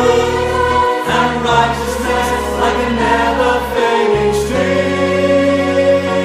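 Choir singing a worship song over instrumental accompaniment with a steady bass line.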